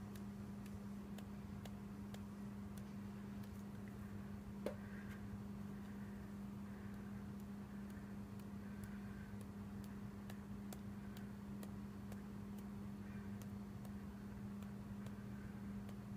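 Faint, scattered light ticks of a fingertip flicking the bristles of a water brush to spatter ink dots, one a little louder about five seconds in, over a steady low hum.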